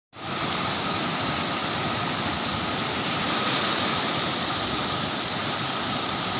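Floodwater pouring through the open sluice gates of a canal regulator and churning in the channel below: a steady, even rush of turbulent water.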